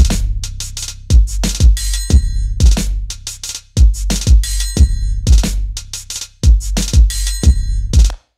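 Electronic drum loop from Logic Pro's Drum Machine Designer 'Boom Bap' kit, played by the Step Sequencer at 90 BPM and repeating every bar, about every 2.7 s. It has doubled kick hits, a sub-bass note that rings low under the first kick, a snare, and higher cymbal-type percussion.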